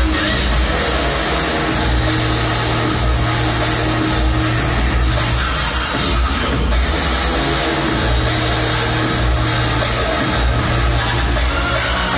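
Electronic music playing loud over a stadium's public-address system, with a heavy, steady bass.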